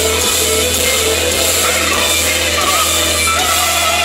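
A black metal band playing live at loud volume: electric guitar over sustained keyboard chords. Near the end a sung voice with vibrato comes in.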